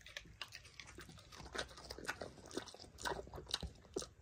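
A pig chewing a strawberry: faint, irregular wet clicks and crunches of its jaws.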